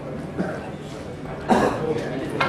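A single cough about one and a half seconds in, over faint background talk in a hall.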